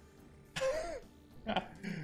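A man's short vocal sound from the throat about half a second in, then a brief laugh near the end.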